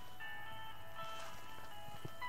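Backing music with no singing: a melody of steady, held notes that change every second or so.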